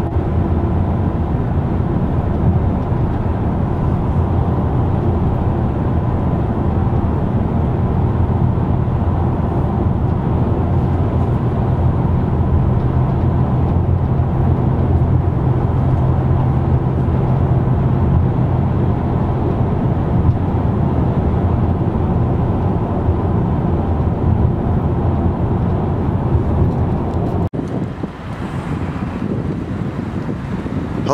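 Steady road and engine noise heard inside the cabin of a moving car, a low drone with a hum that strengthens midway. It cuts off abruptly near the end to quieter outdoor sound.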